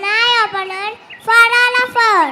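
A young child's voice over a stage microphone, drawn out and pitched like singing, in two phrases. The second phrase is a long steady note that begins to slide down at the end.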